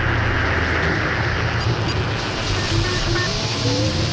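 Experimental noise music built from found radio sounds, electric bass and a Buchla synthesizer: a steady, dense wash of noise over a low drone, with a few short faint tones flickering in the middle range in the second half.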